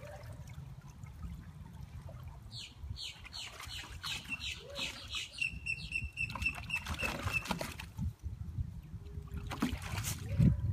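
Water sloshing and splashing as a dog wades in a shallow plastic kiddie pool. A bird sings in the background, a run of downslurred notes from about two and a half seconds in, then a quick string of repeated high notes.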